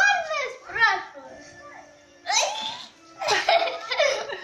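A small child's high-pitched voice in four short bursts of squealing and giggly babbling.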